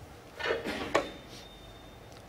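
A single sharp click about a second in, over quiet arena room tone, with a faint thin high tone in the second half.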